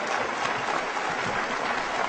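Audience applauding steadily after a line in a political speech.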